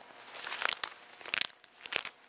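Pages of a Bible being leafed through by hand: a few crisp paper rustles and flips.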